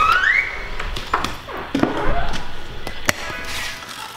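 A door's lever handle and latch clicking as the door is opened, followed by a few sharp taps and knocks, with music playing underneath.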